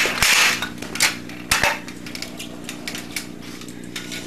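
Kick scooter clattering through a tailwhip: a loud rush of rattling and knocks as the deck spins and lands, then two sharp knocks on the floor about one and one and a half seconds in.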